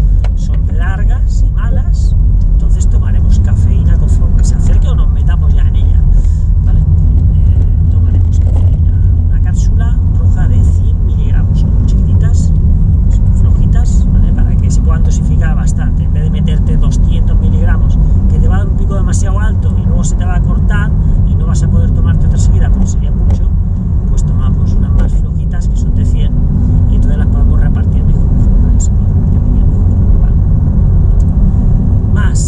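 Steady low road and engine rumble inside a moving car's cabin, with a man talking over it.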